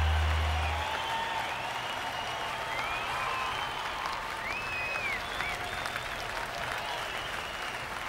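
The song's last low note cuts off about a second in, leaving an audience applauding and cheering, with high shouts rising through the clapping.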